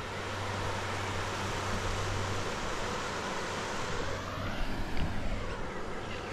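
River water running over a shallow rocky rapid, a steady rush, with a low rumble under it for the first few seconds.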